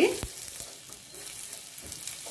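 Gongura leaves, chillies and garlic sizzling in hot oil in a small steel saucepan as a steel spoon stirs them, with a single knock of the spoon on the pan shortly after the start.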